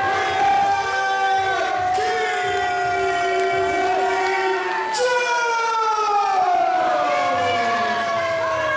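A siren-like wail: several tones held steady for about five seconds, then sliding slowly down together toward the end.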